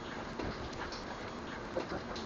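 Rain falling steadily, an even hiss with scattered small drips and ticks, and one brief louder sound near the end.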